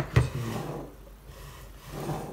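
Plastic lid and handle of a stainless-steel electric kettle being handled. A sharp click and a knock come just after the start, then a short stretch of rubbing, and quieter handling noise follows near the end.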